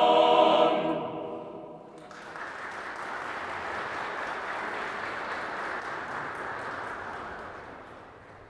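A mixed choir of men's and women's voices holds a final chord that dies away within the first two seconds. Then the audience claps steadily, and the applause tails off near the end.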